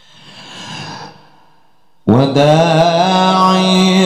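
A Quran reciter draws a long, audible breath into a handheld microphone, then about two seconds in begins a loud, drawn-out melodic note of Quran recitation, the pitch wavering slowly as it is held.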